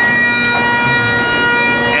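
Bagpipes playing: the drones sound steadily while the chanter holds a single note without change.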